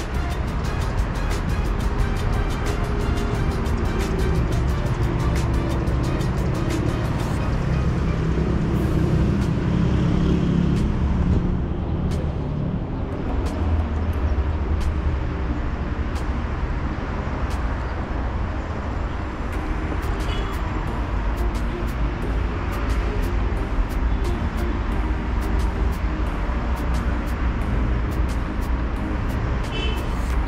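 Road traffic on a city street, a steady rumble of car engines and tyres, with music playing over it.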